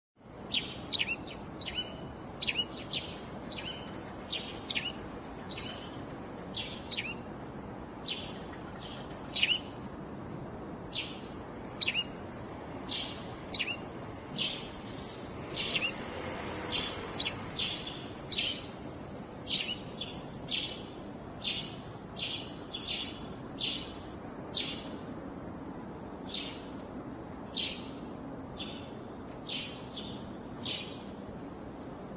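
A bird chirping over and over, short high chirps about one to two a second, with a steady low background noise underneath.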